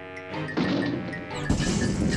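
Cartoon score with a run of short pitched notes. About one and a half seconds in, a sudden loud crash sound effect cuts in and carries on as a dense noise under the music.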